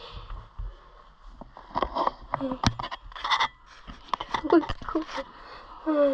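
Low talk and breathing, broken by scattered sharp clicks, knocks and scrapes of gear and the camera being handled in a small wooden hunting blind.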